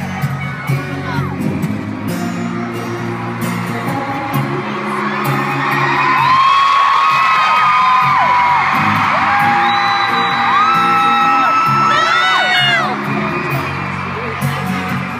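Stadium concert crowd screaming over the band's slow opening music. The screaming swells about six seconds in, with single high-pitched shrieks standing out, and eases again shortly before the end.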